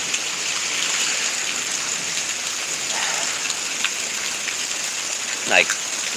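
Steady thunderstorm rain falling, an even hiss.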